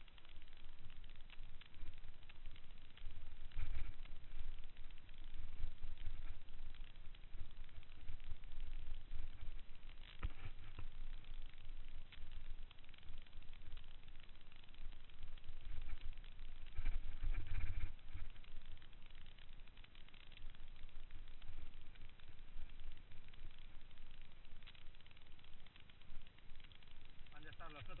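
Mountain bike ride on a rough forest dirt track heard from the rider's own camera: wind buffets the microphone in low rumbles, loudest about four seconds in and again around seventeen seconds, with scattered knocks and rattles as the bike goes over bumps.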